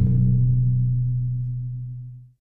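The closing note of a logo jingle: one low held tone that slowly fades away.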